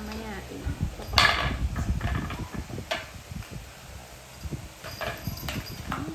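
A French bulldog puppy pushing a hard horn-shaped chew across a tile floor: a run of irregular knocks and scrapes of the chew on the tiles, with a loud short noisy burst about a second in.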